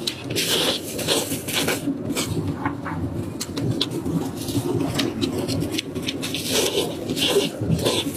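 Close-up eating sounds: wet smacking, sucking and chewing on saucy braised meat, a steady run of short clicks and slurps over a low background hum.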